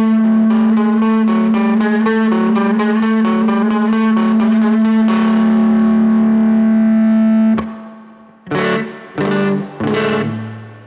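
Amplified archtop guitar played solo: quick picked notes over a steady held low note, then ringing chords that stop short about seven and a half seconds in, followed by a few short strummed chord stabs.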